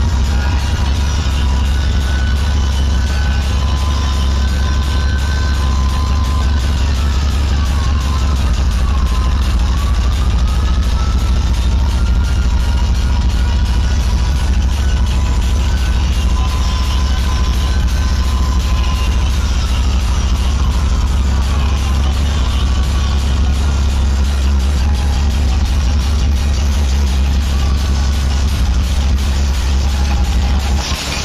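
Loud electronic dance music from a truck-mounted DJ sound system, dominated by a heavy, unbroken bass. A high melody line glides down and back up about nine seconds in.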